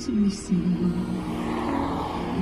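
A car passing close by, its tyre and engine noise swelling in the second half, over a song playing.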